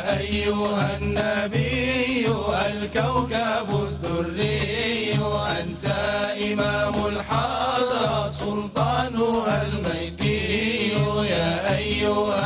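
Men's voices chanting a devotional Arabic song in praise of the Prophet (madih), a lead voice with the group, over a steady beat of hand-held frame drums with jingles.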